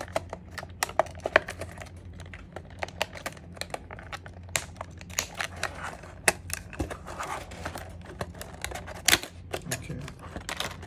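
Clear plastic packaging crackling and clicking as it is pried open and peeled apart by hand. There are sharp, irregular snaps throughout, the loudest about a second in and again near the end.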